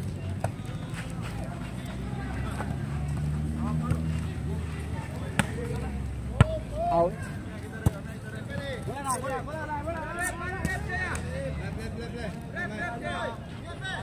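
A volleyball rally: a few sharp smacks as players strike the ball with hands and arms, spread over the first eight seconds, amid voices of players and spectators calling out, louder in the second half.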